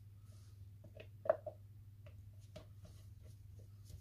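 Light taps and knocks of a spatula against a plastic jug as soap batter is scraped out into a bowl, the loudest a little over a second in, over a steady low hum.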